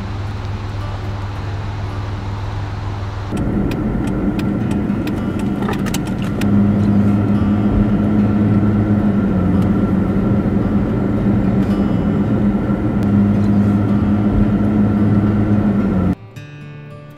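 Car engine and road noise heard from inside a moving car. The noise changes about three seconds in and rises about six seconds in to a steady engine drone that holds to the end.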